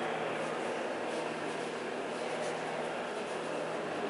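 Steady room noise: an even hiss with a low, constant hum beneath it, with no distinct events.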